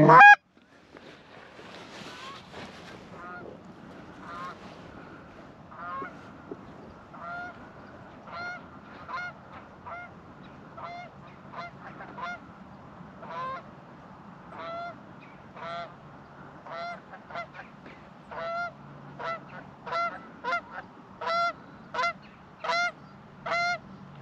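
Canada geese honking as they come in, the short two-note honks coming more often and louder toward the end, after one loud short call right at the start.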